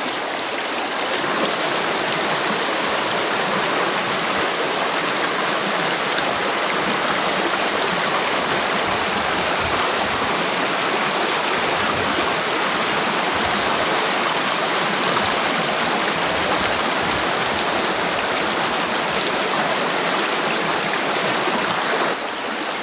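A shallow, rocky river rushing and splashing over stones in rapids, a steady loud rush of water.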